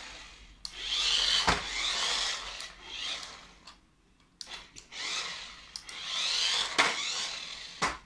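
Toy remote-control car's small electric motor whirring as it drives over a tiled floor, its whine rising and falling in two runs with a short pause between them. A couple of sharp knocks come during the runs.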